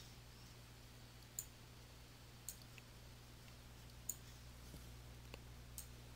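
Faint computer mouse clicks, four sharp ones at uneven intervals with a few softer ticks between, over a low steady hum.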